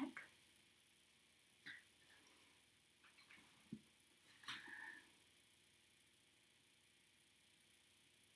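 Near silence: room tone with a few faint, brief handling sounds from nitrile-gloved hands and a lice comb at the scalp, one of them a sharp click near the middle.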